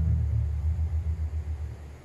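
Plucked double bass playing a low jazz bass line, heard from a record played back over hi-fi loudspeakers, with no other instruments.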